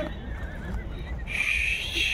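A horse blowing a breathy snort through its nostrils while feeding, one noisy burst of about a second that starts past the middle, over a steady low rumble.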